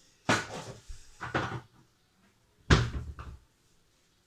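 Kitchen cupboard being opened and shut: three separate knocks and bangs, the loudest about two and a half seconds in.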